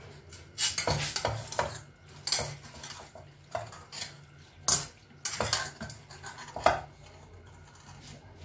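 A metal spoon scraping and clanking against a steel pot while boiled macaroni is scooped out, in a string of irregular clinks and scrapes.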